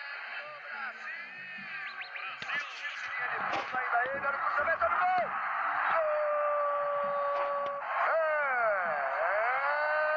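Broadcast sound of a stadium crowd under an excited TV commentator's voice. About six seconds in, as the ball goes into the net, the voice rises to a long held goal shout, then swoops down and back up.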